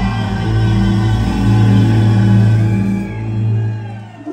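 A live band playing a sustained chord with heavy bass, keyboards and electric guitar, which fades away near the end.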